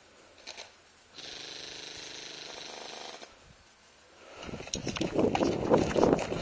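An electric airsoft gun (AEG) fires one steady full-auto burst of about two seconds. Near the end the player starts moving, with footsteps and rustling through dry grass and brush, louder than the burst.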